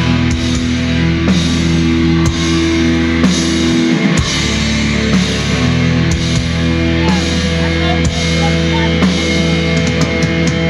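Live heavy metal band playing an instrumental passage: distorted electric guitars and bass holding chords that change about once a second over a drum kit with regular cymbal and drum hits.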